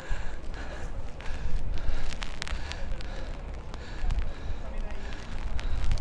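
Wind buffeting the handheld camera's microphone in a steady low rumble while the person holding it walks on a wet path, with footsteps and a few scattered clicks.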